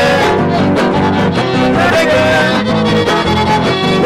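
Huasteco son played live by a trío huasteco: a violin carries a gliding melody over the steady strummed rhythm of a jarana huasteca and a huapanguera, in an instrumental passage without singing.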